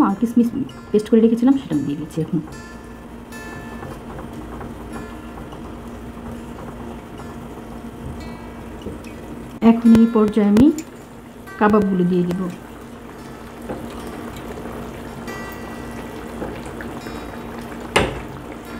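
Curry gravy simmering in a pot, a steady bubbling hiss, under background music, with a few short bursts of voice near the start and again around the middle.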